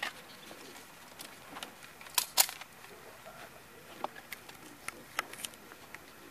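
Scattered short, sharp metallic clicks and clacks, the loudest pair about two seconds in: a CZ 75B 9mm pistol being handled as it is loaded and made ready and holstered.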